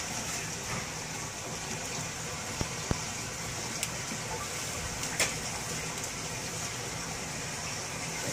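A hand gently swirling chum salmon eggs in a plastic bucket: a soft, steady wet stirring with a few faint clicks.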